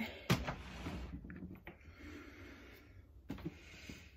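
A person's breathing close to the microphone: a sharp mouth click, then a long breath out lasting a couple of seconds that fades away. A brief soft sound follows near the end.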